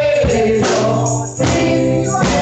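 Live gospel music: a woman singing a long held note that slides down in pitch, backed by a drum kit with cymbals and a steady bass.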